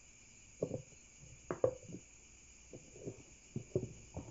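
A few light knocks and taps, scattered and uneven, over a steady faint high hiss. They are most likely from handling the cuttings and the plastic bowl.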